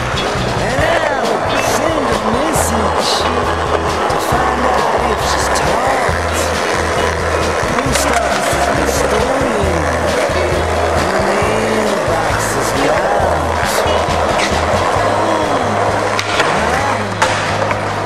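Skateboard wheels rolling over a concrete floor, with scattered sharp clicks and knocks from the board, under a rock song with a steady bass line.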